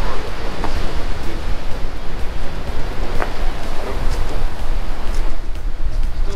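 Wind buffeting the microphone over a steady wash of sea surf, with a single sharp snap about three seconds in.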